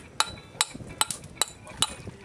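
A queen conch shell struck with a metal hand tool in quick, even blows, about two to three a second, each a sharp ringing clink: knocking a hole in the spire to free the animal from its shell.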